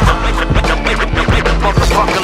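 Hip-hop beat with turntable scratching: short record scratches sliding up and down in pitch over a steady bass line and drums.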